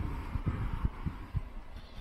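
The walker's footsteps picked up as dull low thuds through a handheld camera, about two a second at walking pace, over a low wind rumble on the microphone.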